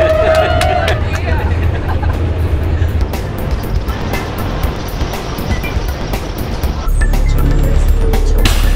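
A passenger's held 'woo' cheer at the start. After it comes the steady low rumble of a shuttle bus driving, engine and road noise heard from inside the bus, and the rumble shifts near the end.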